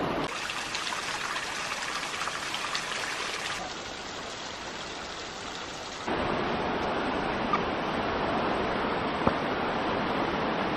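Thin curtain of water dripping and trickling off a mossy rock overhang: a fine, hissing patter of many drops splashing. About six seconds in it gives way abruptly to a fuller, deeper rushing noise of wind and a river.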